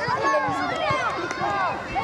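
Several voices shouting and calling over one another, many of them high-pitched, as players and onlookers call out during open play on a football pitch.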